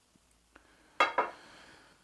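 Two quick clinks about a second in, about a fifth of a second apart, with a short ring: a glass cologne bottle being handled.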